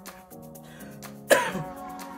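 Background music with steady held notes; about a second in, a woman coughs once, loud and sudden, a sign of the rough breathing from her illness.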